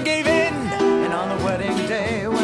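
Musical-theatre cast recording: voices singing over a small band's accompaniment.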